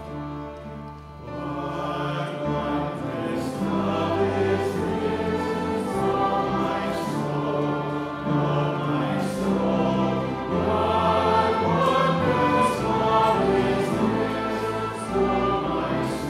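A group of voices singing a hymn with piano and instrumental accompaniment. The singing comes in about a second in, after a quieter instrumental passage, and goes on at a steady level.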